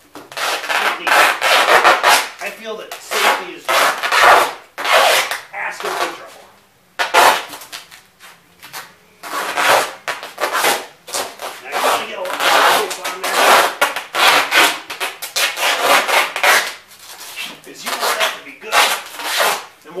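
Duct tape being pulled off the roll in repeated ripping strokes as it is wound round and round, with a few short pauses.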